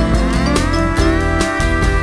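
Instrumental passage of a pop song: a steady drum beat and bass under several instrument lines that slide up and down in pitch together.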